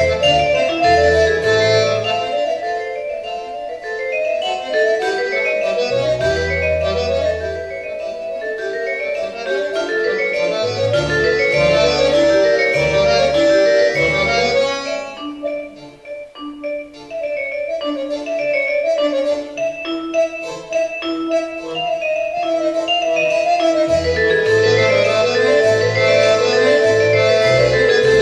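Roland digital accordion (V-Accordion) played solo: a right-hand melody over left-hand bass notes that enter and drop out. The playing softens to a quiet passage about halfway, then builds back up.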